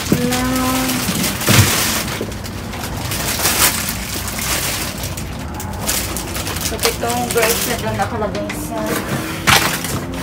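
Plastic produce bags full of grapes rustling and crinkling as they are grabbed and shifted, with cardboard boxes scraping and knocking among the trash bags.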